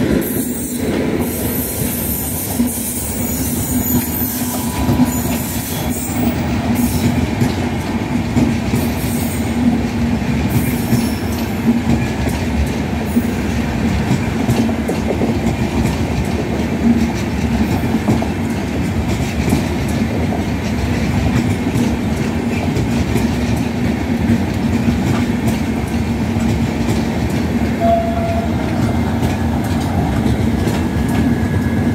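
Indian Railways express train's LHB coaches running past close by: a loud, steady rumble of steel wheels on the rails, unbroken as the coaches go by one after another.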